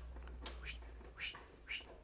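Faint rustling and scraping of insulated wires being pulled through a bundle of wiring inside a heat pump condenser's control box, about six soft scrapes over a low steady hum.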